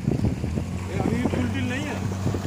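Outboard motor of an inflatable flood-rescue boat running at a steady pitch as the boat moves through floodwater.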